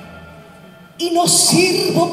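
Live orchestral music: a loud passage dies away, and about a second in a voice with sliding pitch comes in over the accompaniment.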